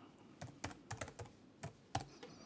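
Typing on a computer keyboard: about eight faint keystrokes at an uneven pace.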